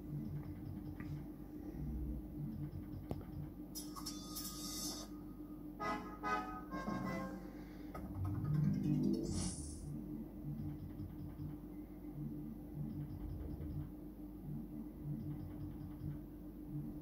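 Merkur Magie 2020 Deluxe slot machine playing its electronic game melody in a repeating loop, with bright chiming effects about four and six seconds in, and a rising jingle near nine seconds as a winning line lands.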